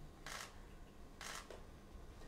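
Canon EOS camera shutter firing twice, about a second apart.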